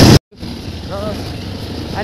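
Wind buffeting the microphone over a running motorcycle, cut off abruptly a fraction of a second in. After a moment of silence, quieter steady engine and road noise comes back, with a short vocal sound about a second in.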